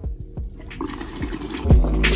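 Water draining out of an opened steam-boiler low water cut-off into a plastic bucket, under background music whose beat comes in loudly near the end.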